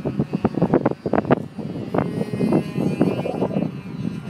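Ultra Stick RC model airplane's motor running as it flies overhead, with strong gusty wind buffeting the microphone.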